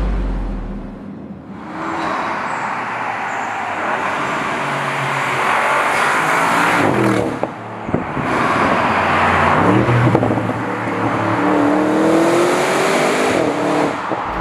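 Twin-turbo V8 of a 2021 Audi RS7 accelerating hard, its pitch climbing in long sweeps, with a short break about halfway.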